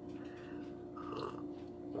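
Faint mouth sounds of a woman sipping a drink from a mug and swallowing, over a steady low hum.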